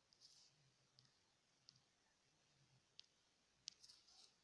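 Near silence with a few faint, sharp clicks scattered through it, the sharpest near the end.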